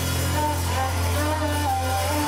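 Live rock band playing: electric guitar lines over a long-held low bass note.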